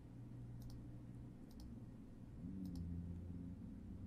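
Three faint computer mouse clicks, about a second apart, over a low steady hum.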